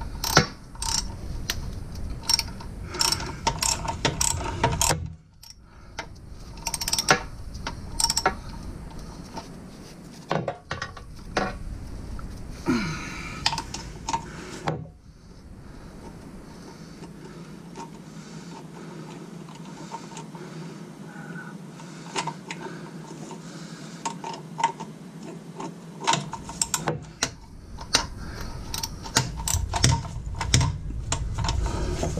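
Socket ratchet clicking in spurts as a bell-housing bolt between the engine and transmission is turned, with a few metal clinks. There is a sparser, quieter stretch of about ten seconds past the middle before the clicking picks up again near the end.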